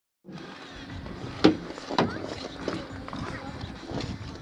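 Ice rink ambience: background voices of skaters and a steady hum of activity, with two sharp knocks about a second and a half and two seconds in, the loudest sounds.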